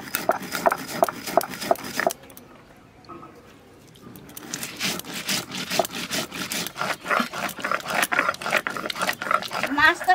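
A stone roller is ground back and forth over cumin seeds and chillies on a flat stone slab (shil-nora), making a repeated rasping scrape at about four strokes a second. The grinding pauses about two seconds in for roughly two seconds, then resumes. A voice starts right at the end.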